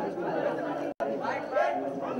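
Crowd chatter: several people talking at once in a large hall, with the sound cutting out for an instant about halfway through.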